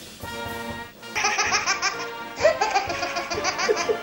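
A person laughing hard in rapid, repeated high-pitched bursts, starting about a second in and pausing briefly near the middle, with music underneath.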